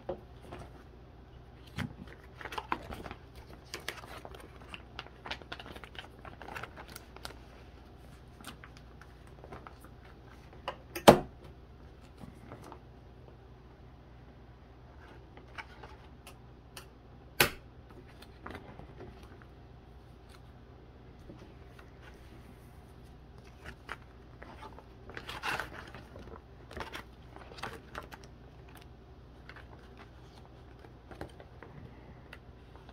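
Clear plastic binder pages crinkling and rustling as trading cards are handled, slid into the sleeve pockets and pages turned, in short scattered bursts. Two sharp clicks stand out, about eleven seconds in and again about six seconds later.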